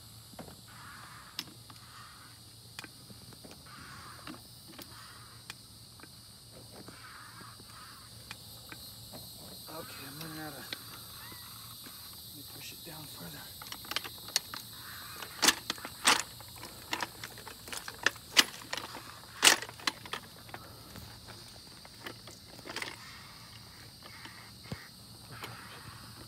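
Hydraulic floor jack being hand-pumped under a tree stump: faint regular strokes of the handle, then a run of sharp snaps and cracks in the middle as the stump is forced upward. A steady high buzz runs behind.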